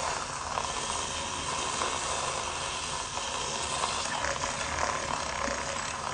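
Handheld electric milk frother running steadily in a mug of coffee, its whisk churning and frothing the coffee with an even whir and hiss.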